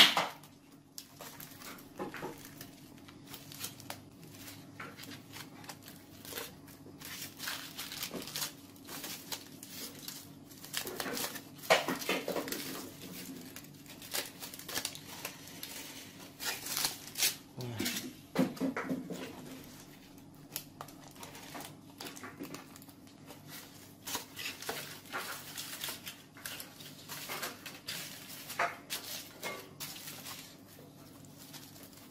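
Aluminium foil crinkling and tearing in irregular rustles as it is peeled open by hand from roasted sweet potatoes, with louder bursts of handling now and then.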